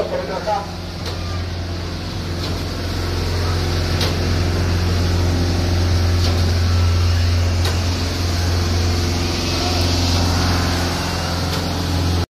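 A police water-cannon truck's engine runs with a steady low drone, under the hiss of its water jet spraying, which grows louder in the middle.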